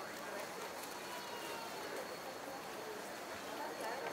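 Pedestrian street ambience: indistinct voices of passersby talking at a distance, with faint footsteps on the paving.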